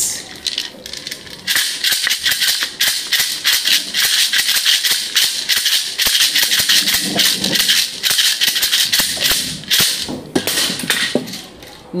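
A hand-shaken rattle, a shaker of beads or seeds, played in a fast, steady shaking rhythm. It grows loud about a second and a half in, dips briefly midway and stops shortly before the end.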